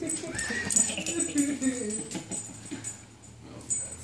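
A dog whining and grumbling in drawn-out, wavering vocal sounds that fade out about two and a half seconds in.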